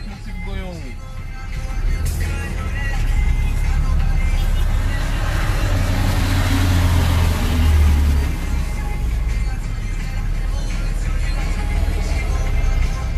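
Road traffic: a steady low engine rumble, with vehicles moving past and a broad swell of engine and tyre noise that is loudest about six to eight seconds in.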